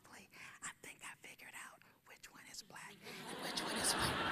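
A woman whispering a few quiet words into a stage microphone, then, about three seconds in, a swell of audience laughter and murmuring rising in a hall.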